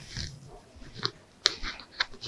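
Faint rustling and footsteps of a person walking away, with a couple of light clicks about a second in and again half a second later.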